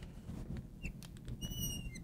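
Marker squeaking on a lightboard as lines are drawn: a short squeak a little before the middle, then a longer high squeak lasting about half a second.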